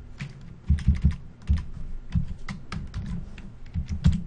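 Typing on a computer keyboard: an irregular run of key clicks, some struck harder with a low thud, entering a numeric value.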